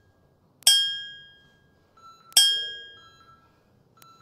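Two bell-like dings about a second and a half apart, each ringing out and fading over about a second: a chime marking the change to the next exercise.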